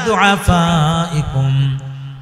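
A man's voice chanting Arabic in a melodic recitation style through a microphone, the pitch gliding down and then settling on a long held low note. These are the Arabic words of a hadith, intoned before being translated.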